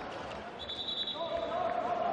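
A handball being bounced on the indoor court, over low arena crowd noise, with a brief high-pitched tone a little after half a second in.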